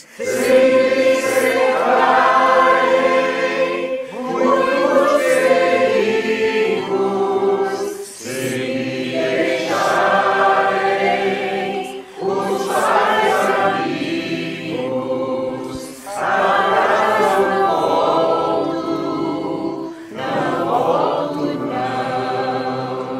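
A mixed choir of men and women sings in phrases of about four seconds, each followed by a brief break.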